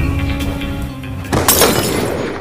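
Intro music of sustained tones, broken about one and a half seconds in by a sudden glass-shattering sound effect that fades away.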